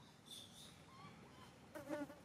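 Faint ambience with a brief insect buzz about a third of a second in, then a short, louder pitched call near the end.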